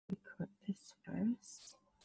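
Soft speech: a few short words spoken quietly, with hissy consonants, trailing off before the end.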